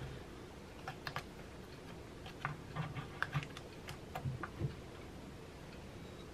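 Faint, irregular light clicks and taps of small objects being handled, with a cluster of them in the middle seconds.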